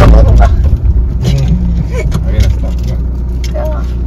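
Cabin noise of a Maruti Suzuki S-Cross. A loud low rumble from the car on the move drops about a second in as it slows to a stop, then settles into a steadier, quieter engine idle.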